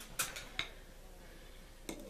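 A few light clicks of a metal screwdriver shaft against the reel's side cover and its freshly oiled shielded ball bearing, the sharpest one near the end, as the shaft is set into the bearing to check that it turns freely.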